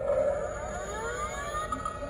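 Battery-powered Halloween animated computer-terminal prop playing an electronic spooky sound effect through its small speaker, set off by its try-me button: a steady tone with several siren-like tones gliding upward over it.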